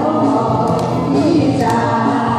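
A man and a woman singing a duet through microphones over backing music with a light, steady beat.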